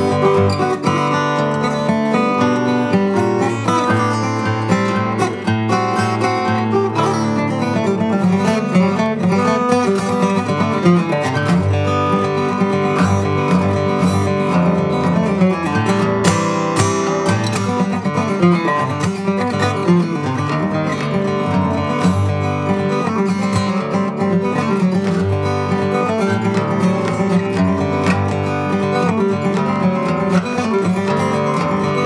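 Greenfield G3 handmade acoustic guitar played solo fingerstyle with a thumb pick: a continuous, Spanish-style piece of quick plucked notes and chords.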